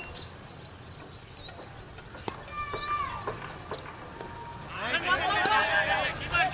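Small birds chirping with short rising calls throughout, then, about three-quarters of the way in, several cricket players' voices shouting at once as the ball is played.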